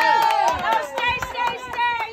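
A group of people cheering with long high-pitched whoops and excited shouts, with scattered hand claps.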